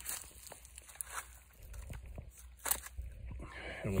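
Footsteps crunching on dry grass and leaf mulch, a few faint scattered crunches and clicks with one sharper crunch after two and a half seconds.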